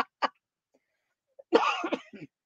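A woman's laughter trailing off in two short breaths, then a single cough about a second and a half in.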